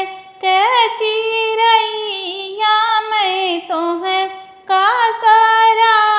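A woman singing an Awadhi sohar folk song in a high voice, holding long notes with ornamented slides. The phrases are broken by short breaths near the start and again past the middle.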